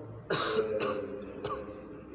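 A man coughing and clearing his throat: one loud burst about a third of a second in, then two shorter ones.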